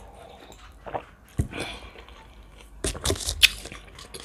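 Quiet sips from a coffee mug, then a single knock about a second and a half in as the mug is set down on the table. Near the end comes a short crisp rustle as a sheet of lavash is handled and rolled up.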